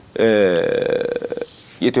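A man's drawn-out hesitation sound, a held vowel like 'ehhh' that drops in pitch and then stays level for about a second. He starts speaking again near the end.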